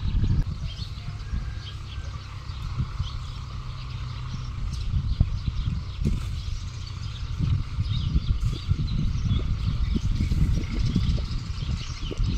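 Open-air ambience: an uneven, gusting low rumble of wind on the microphone, with faint bird chirps in the background.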